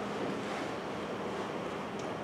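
Steady hiss of room tone with no clear events: the background noise of a lecture hall and its recording.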